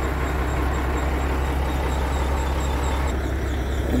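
Semi truck's diesel engine idling with a steady low rumble.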